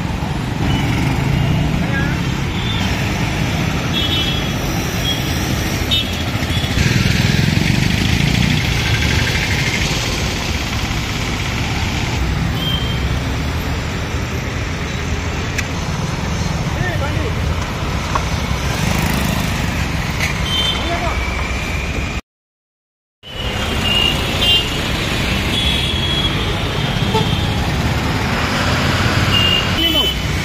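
Busy road traffic: engines of passing trucks, auto-rickshaws and motorbikes, with frequent short horn toots scattered through. The sound cuts out completely for about a second just past the middle.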